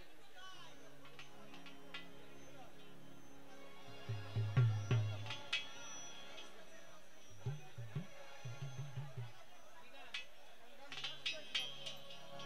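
Folk ensemble warming up before a song: a sustained harmonium-like drone of held notes, with a few loose hand-drum strokes about four seconds in and again around eight to nine seconds, not yet settled into a rhythm.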